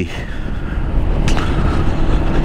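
Wind noise over the microphone and a Zontes 350E scooter's single-cylinder engine running at a steady cruise of about 50 km/h, an even rushing sound heaviest in the low end.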